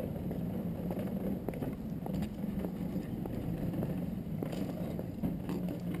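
Steady low mechanical hum, with faint footsteps or scuffs on a paved path.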